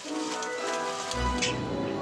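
Red wine sizzling and crackling in a hot steel pot of mussels on full heat, under background music.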